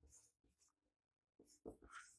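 Near silence, with faint strokes of a marker writing on a whiteboard, a little more distinct near the end.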